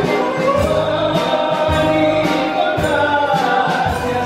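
Live band with bouzouki, guitar, keyboard and drums playing a Greek-style song, with singing held on long notes over a steady beat.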